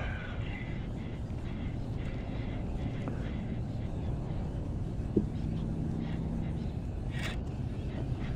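Baitcasting reel being wound in while a small hooked fish is played from a kayak, over a steady low wash of wind and water. A faint hum runs for about a second past the middle, and a short rasp comes near the end.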